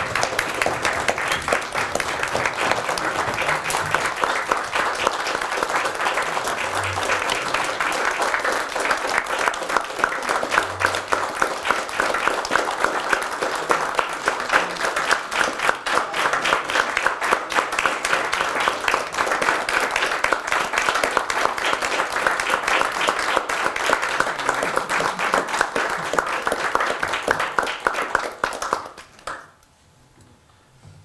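Audience applauding, a dense steady clapping of many hands that dies away about a second before the end.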